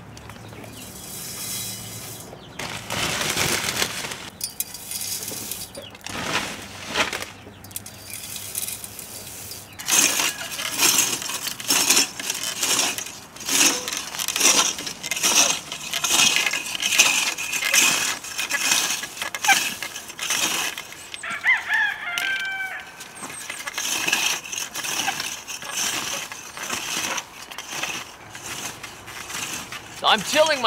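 Scattered clinks and rustles at first, then a Planet Junior wheel hoe pushed through garden-path soil, its three cultivator teeth scraping and clinking in quick repeated strokes. A rooster crows once about two-thirds of the way through.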